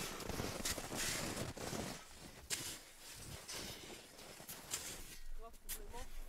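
Spades digging into hard-packed snow: a series of separate crunching strokes and scrapes as snow is cut and shovelled out.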